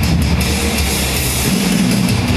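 Heavy rock song with electric guitar and a drum kit playing in the background.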